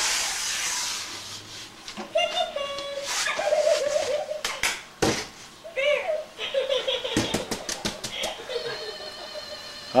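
Indistinct voice-like sounds and giggling, broken by a few sharp clicks, with a brief hiss at the start.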